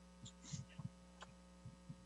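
Near silence: a faint steady electrical hum on the line, with a few soft, brief low knocks.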